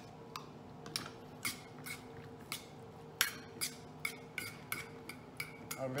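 Short, sharp clinks and clicks from a stainless steel mixing bowl as diced raw yellowtail is mixed with sauce in it, coming more often in the second half, over a faint steady hum.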